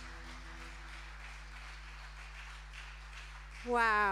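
Audience applause as the last held notes of a live song fade out. Near the end comes one loud vocal cheer into a microphone, falling in pitch, over a steady low hum from the sound system.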